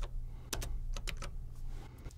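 A computer keyboard being typed on: a few separate keystroke clicks spread out over the two seconds.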